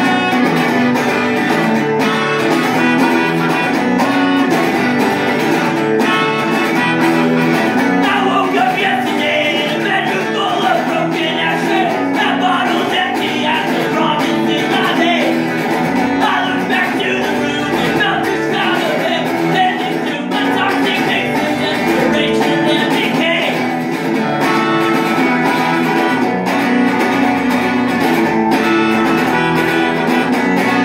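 Live folk-punk song: a strummed electric guitar, with a man singing into a microphone from about eight seconds in.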